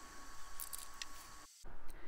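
Faint handling sounds from a small plastic glitter pot held over the paper: a few light clicks over low room noise, cut off briefly by a dropout near the end.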